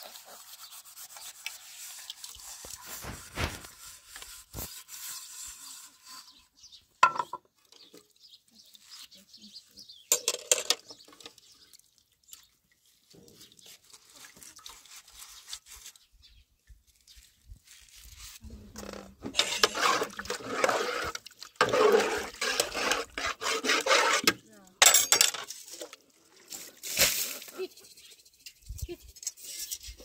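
Steel cooking pot being emptied and rinsed at a water tank's tap: small knocks and clinks of a metal utensil against the pot, then loud spells of splashing water with metal clinks in the second half.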